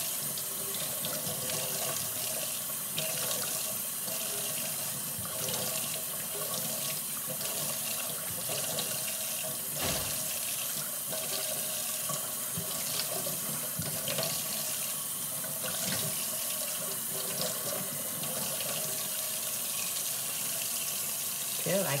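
Kitchen tap running steadily into a stainless steel sink, with irregular splashes as water is scooped up in cupped hands and splashed on the face to rinse off a clay mask.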